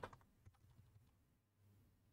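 A few faint computer keyboard keystrokes, scattered through the first second.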